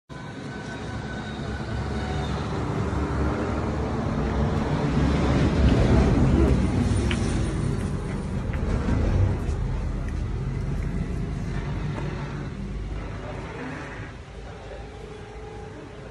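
Road traffic noise with a vehicle going by, loudest about six seconds in, then fading away near the end.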